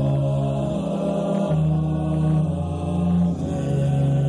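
Mixed choir of men's and women's voices singing slowly, holding each chord for about a second before moving to the next.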